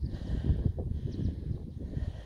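Wind rumbling and buffeting on a phone's microphone, an uneven low rumble, with handling noise as the phone is swung round to film the roadside.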